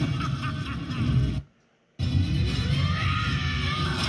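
Movie soundtrack music mixed with sound effects, played back through a computer's speakers. It breaks off into silence for about half a second partway through, at an edit, then starts again.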